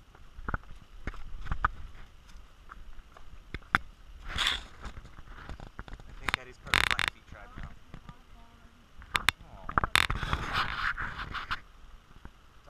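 Footsteps scuffing and crunching on a rocky dirt trail, with scattered clicks and knocks and louder scraping, rustling bursts a little after four seconds, around seven seconds, and again at about ten to eleven seconds.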